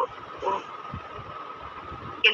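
A pause between spoken phrases: steady background hiss with a faint constant high whine, broken by one short syllable from a woman's voice about half a second in.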